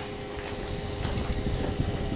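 Steady mechanical hum over a low rumble, with a short high beep a little over a second in.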